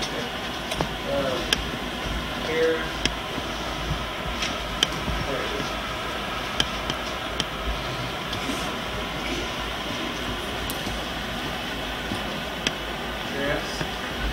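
Steady hiss and low hum of an old camcorder recording, broken by scattered sharp snaps as karate students move through their form, with a few faint voices now and then.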